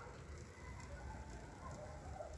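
Quiet pause: faint steady low background rumble with no distinct sound event.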